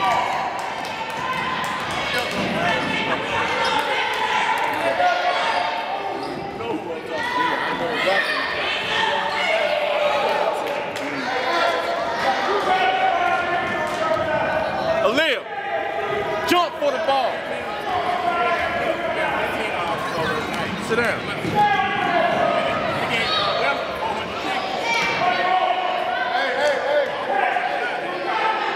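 Basketball bouncing on a hardwood gym floor, under near-constant shouting and calling voices, with the echo of a large gym.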